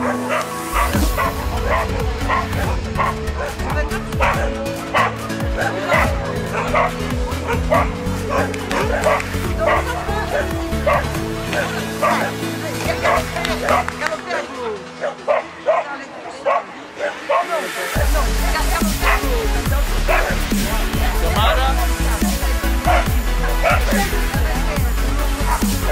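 Background music with a dog barking repeatedly over it; a heavy bass beat comes in about three-quarters of the way through.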